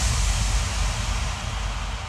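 Closing tail of an electro house track: after the last kick drum, a wash of noise over a deep rumble, with no beat, fading slowly away.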